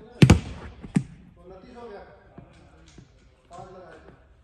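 A bowled ball knocking hard in an echoing sports hall: a quick double knock, then a single sharp knock just under a second later. Voices talk quietly afterwards.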